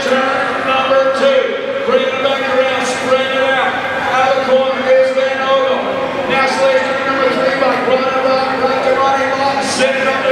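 Race announcer talking without pause over the arena's PA system, calling a BMX race.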